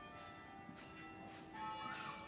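Church bells ringing faintly, several held tones overlapping and dying away slowly.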